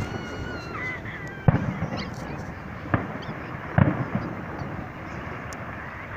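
Distant firework shells bursting: three sharp bangs about a second and a half, three and nearly four seconds in, over a steady background haze. In the first second a honk-like tone slides down in pitch.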